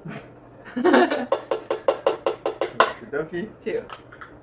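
A person laughing hard in a quick run of evenly spaced bursts, about six a second, lasting about two seconds.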